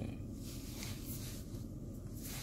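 A steady low hum inside a car's cabin, with no sudden events.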